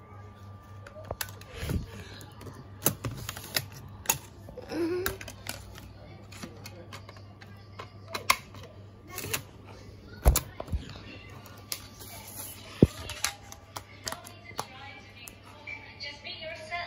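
Scattered sharp clicks and knocks, the loudest about ten seconds in, from handling a laptop and its open DVD drive tray, over a steady low hum.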